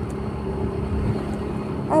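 Small motorcycle engine running with a steady hum under way, with road and wind noise.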